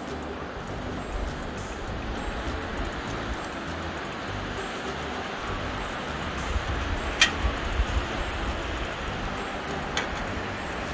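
Wind buffeting the microphone over a steady hiss, with one sharp click about seven seconds in.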